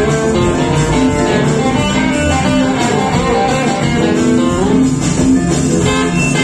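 Live rock and roll band playing an instrumental break, an electric guitar lead over the band, with bending notes in the middle of the passage.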